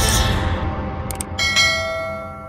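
Subscribe-button sound effects over the news channel's outro music: the music dies away, two quick mouse clicks sound a little after a second in, then a notification bell chime rings on.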